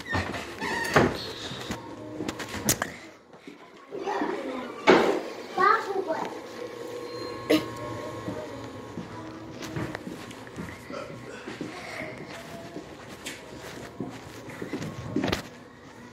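Young children's voices and indistinct babble in a small room, broken by a few sharp knocks.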